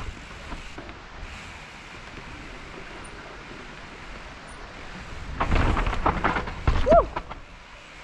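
Mountain bike rolling down a dirt trail: steady tyre and wind noise, growing louder and rougher about five seconds in as the bike rattles and knocks over rough ground.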